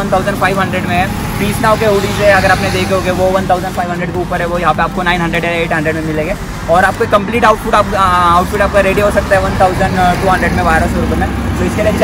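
A man talking continuously, with steady road traffic noise behind.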